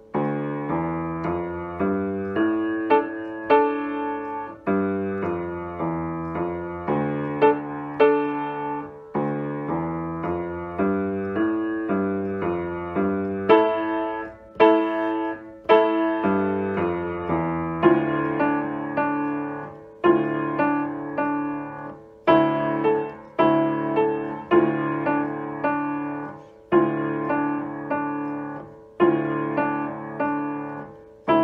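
Upright piano played with both hands: a simple D minor piece, one note at a time in each hand, with repeated notes and short slurred phrases at about two notes a second. The player says the piano is out of tune.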